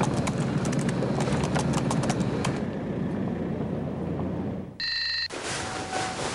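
Rapid, irregular clicking like computer keyboard typing, over a steady noisy background, for about the first two and a half seconds. A short electronic beep follows about five seconds in.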